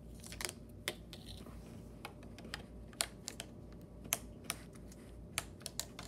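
Irregular light clicks and taps of a small plastic plug-in stick knocking against a laptop's side ports as it is fumbled into the wrong port, with a cluster of quicker clicks near the end.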